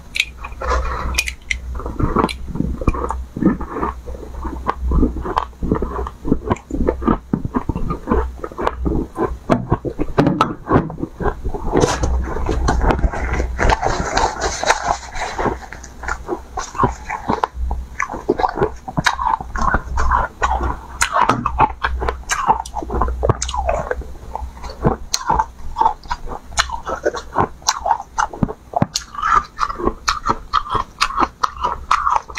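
Close-miked biting and chewing of ice chunks coated in green powder: a continuous, irregular run of sharp crunches and cracks, with a steady low hum underneath.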